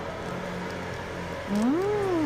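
Steady street background noise with a low hum. About one and a half seconds in, a woman gives a single closed-mouth "mmm" through a mouthful of food, rising and then falling in pitch.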